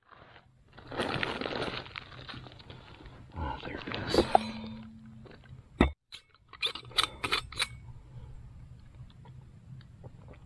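Fabric and backpack rustling as a towel and gear are handled, then several sharp clicks a little past the middle as the cap of an insulated metal water bottle is unscrewed.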